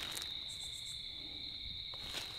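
Crickets trilling in a steady, high, continuous chorus, with a few faint short high chirps about half a second in.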